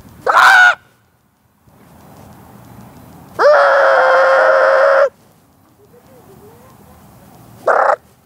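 Loud fowl calls: a short call near the start, one long call in the middle that rises and then holds a steady pitch for nearly two seconds, and another short call at the end.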